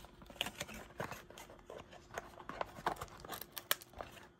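Small kraft-cardboard box handled and pried at by fingers: irregular small clicks, scrapes and rubs of card.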